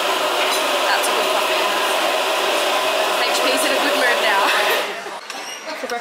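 Loud steady hissing whir of a café machine behind the counter, with a few steady tones running through it, stopping about five seconds in.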